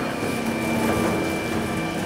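Electric gear motor of the grape elevator conveyor that feeds the bladder press, running steadily with a low hum and a faint high whine over a mechanical rattle.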